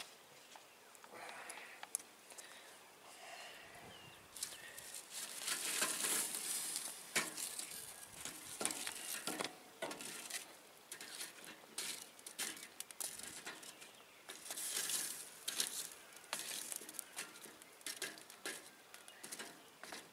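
Metal tongs shifting lit charcoal briquettes on a wire grate: irregular clicks and knocks with crunchy scraping, louder in two stretches.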